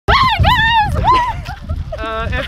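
Three quick, very high-pitched excited squeals from a person, each rising and falling, in the first second and a half, with a low rumble underneath.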